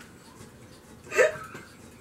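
A woman's single short burst of laughter about a second in, a quick hiccup-like giggle, with quiet room sound around it.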